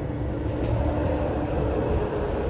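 Amtrak Pacific Surfliner passenger train running past, heard through a window pane: a steady low rumble with a faint held tone above it.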